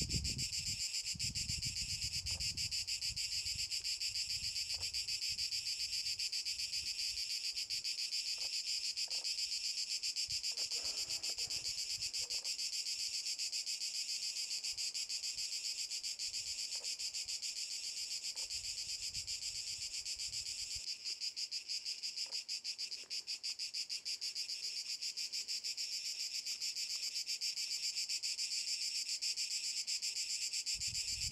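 A steady, unbroken chorus of cicadas, a dense rapid buzzing that holds at one level throughout, with a low wind rumble on the microphone that fades out about two-thirds of the way through.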